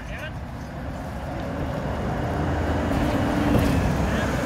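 2011 Nova Bus LFS HEV hybrid transit bus approaching and passing close by, its road and drivetrain noise growing steadily louder, with a steady low hum under the tyre noise that peaks about three and a half seconds in.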